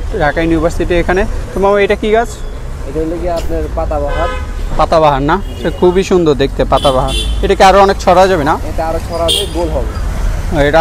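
People talking over a steady low rumble of road traffic, with short vehicle horn toots about four seconds in and again around seven seconds.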